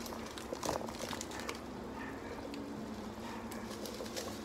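A Magic Sarap seasoning sachet crinkling as it is torn open and handled, with a few sharp rustles in the first half, over a faint steady hum.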